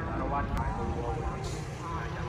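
Indistinct voices talking in the background over a steady low rumble.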